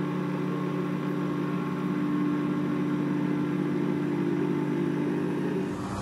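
CNC milling machine cutting a profile into an aluminium plate with an end mill: a steady, even machining hum from the spindle and cut.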